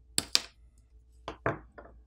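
Short sharp clicks as a metal pry tool pops a smartphone's bottom loudspeaker assembly free of the midframe: two quick clicks near the start, then three more over the second second.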